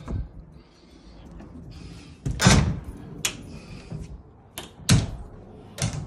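Tall painted garage storage-cabinet doors being handled and swung shut. There is a loud thud about two and a half seconds in, then several sharper knocks and bangs of the doors against the cabinet frame.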